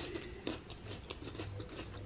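Biting into and chewing a slice of raw jicama: faint, crisp, irregular crunching.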